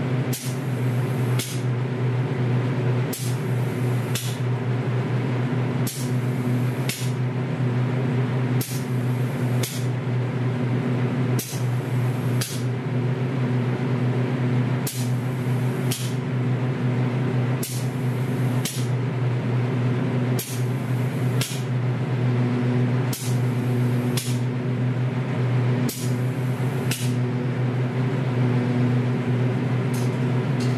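An automatic wheel-painting robot sprays a wheel in an enclosed spray booth, giving short hisses of spray in pairs about every three seconds as the arm makes its passes. Under them runs the steady hum of the booth's extraction fan.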